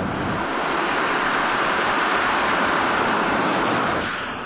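Moskvitch Aleko car passing close by at speed: a steady rush of tyre and wind noise with the engine under it, swelling as it comes by and easing off near the end.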